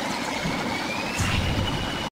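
Animated-logo intro sound effect: a steady rushing whoosh of noise with a faint tone that glides slowly upward and then holds.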